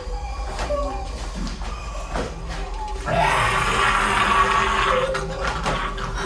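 A zombie on the series' soundtrack growling and snarling. About three seconds in it rises into a louder, harsh rasping shriek that lasts about two seconds.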